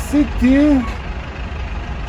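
Steady low rumble of idling bus engines, with a man's voice briefly in the first second.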